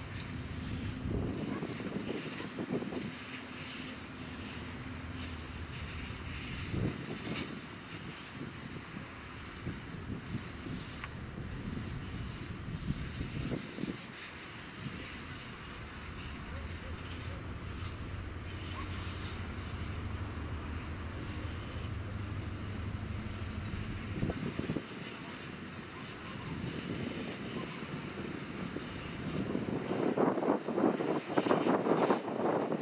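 SM42 diesel-electric shunting locomotive running with a steady low drone as it slowly hauls a string of open coal wagons, with several short low rumbles over it.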